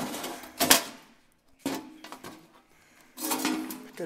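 A few sharp knocks and scrapes from someone moving over a debris-strewn tiled floor, the loudest under a second in, then a quieter stretch and more scuffing near the end.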